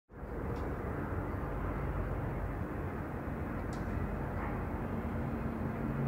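Steady outdoor city ambience: a low, even rumble of distant traffic with a faint hum.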